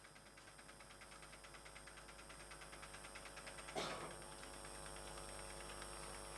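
Faint steady electrical hum with a fast, even ticking, about ten ticks a second, that slowly grows louder. There is one short louder sound about four seconds in.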